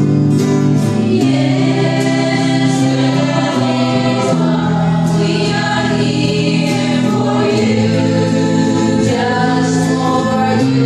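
A small group of mostly female voices singing a slow worship song together, accompanied by strummed electric and acoustic guitars.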